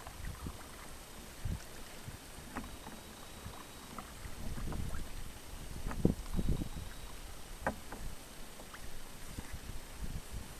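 Kayak paddle strokes in calm loch water: irregular splashes and drips with small knocks, loudest about six seconds in.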